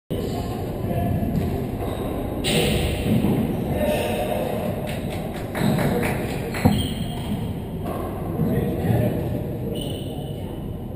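Handball court sounds: faint knocks of the small rubber ball, then one sharp loud smack of the ball about two-thirds of the way in, echoing in the enclosed court over indistinct voices.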